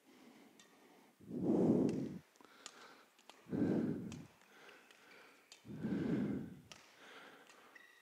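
A person breathing close to the microphone: three slow breaths about two seconds apart. Faint sharp taps from a badminton rally come in between the breaths.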